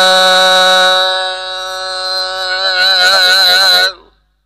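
Sikh kirtan: one long sung note of a Gurbani shabad, held level at first and then wavering with vibrato in the second half, breaking off abruptly just before the end.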